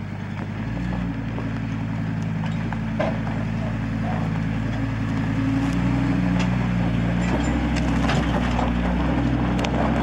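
Pickup truck engine working under load as it tows a travel trailer up a steep dirt trail, its pitch stepping up about a second in and again around halfway. Tyres crackle over dirt and gravel.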